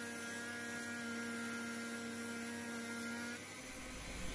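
Handheld rotary tool with a small sanding drum running at a steady hum while sanding grooves into wood; the hum drops a little quieter shortly before the end.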